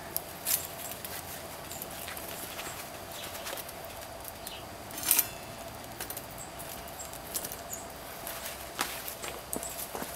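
Wood fire crackling with scattered small pops in a folding steel stick stove under a pot, with a louder metallic clink about five seconds in as the stove's side vent flap is opened.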